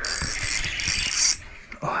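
Fishing reel cranked fast to take up line right after a hookset on a walleye, a dense mechanical whirr for about a second and a half that stops suddenly.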